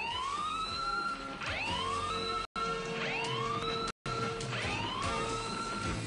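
Cartoon alarm siren whooping: each call sweeps up in pitch and then holds, about four times, one every second and a half. It is the prison alarm going off for an escape. The sound cuts out briefly twice.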